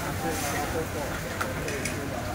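Untranscribed talk over a steady hiss of noodles frying in a wok, with a sharp clink of the metal spatula against the wok about one and a half seconds in.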